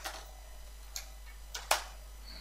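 Computer keyboard keystrokes: a few separate clicks spread across the two seconds, over a low steady hum.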